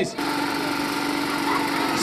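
A small engine running steadily at a constant pitch, cutting in abruptly just after the start.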